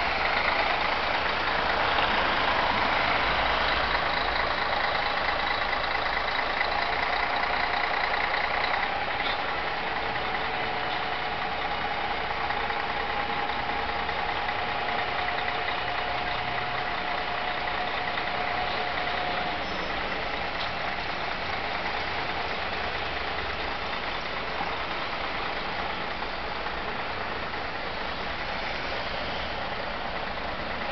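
Street traffic: a city bus close by at the start, loudest for the first several seconds, then a steady mix of car and bus engines running and idling at a junction.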